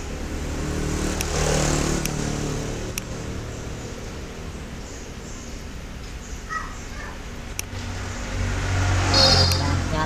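Low engine-like hum of a motor vehicle, swelling about one to two seconds in and again near the end, with a few sharp computer-mouse clicks.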